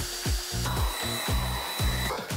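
A cordless drill/driver runs briefly, then a Grunder electric paint sprayer runs with a steady hiss and a thin high whine, over background music with a steady beat.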